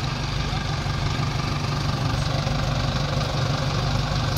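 Tractor diesel engines running steadily at a low, even drone, with no revving.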